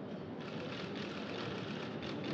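Steady background noise of a large hall, with faint irregular rustles and clicks over it.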